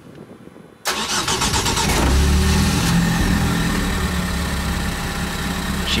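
Zenos E10 S's turbocharged 2.0-litre Ford EcoBoost four-cylinder starting: it catches suddenly about a second in, its revs flare up briefly, then it settles into a steady idle.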